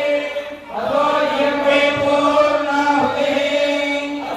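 A group of male priests chanting Vedic mantras together on steady, held pitches, amplified through a microphone. The chanting breaks briefly for breath about half a second in, then carries on.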